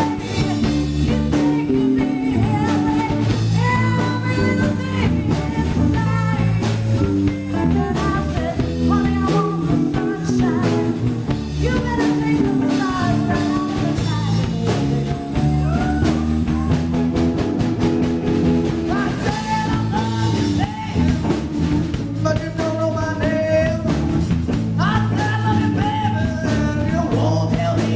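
A live rock band playing: a woman singing lead over a drum kit, electric bass and guitar.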